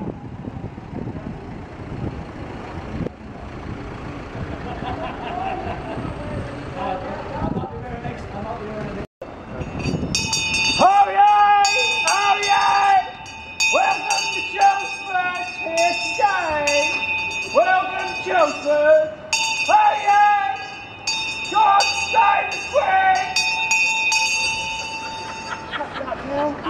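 A brass handbell rings without a break while a man shouts loud, drawn-out calls over it. These start after a break about nine seconds in; before that there is only wind and street noise.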